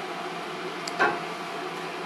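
Steady background hum in a small kitchen, with a single light click about a second in.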